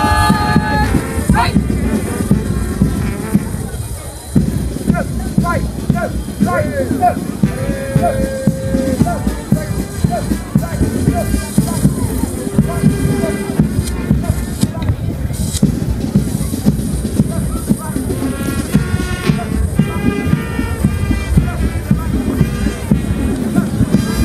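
Band music for a marching parade, with a steady drum beat and a few held notes. A man's voice on the public address comes in briefly now and then.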